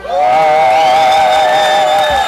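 Electric guitar feedback from the stage amps right after the song ends: two loud held tones a little apart in pitch, the higher one wavering, ending about two seconds in.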